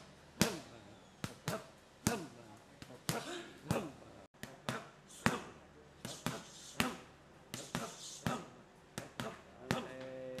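Boxing gloves smacking curved Thai pads held by a trainer: sharp hits in quick, irregular combinations, about two a second, with a brief cut-out about four seconds in.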